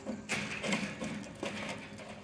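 Metal fire poker prodding and breaking up charred, burning logs on the perforated steel base of a Solo Stove fire pit: a few soft knocks and scrapes among the embers over a low steady hiss.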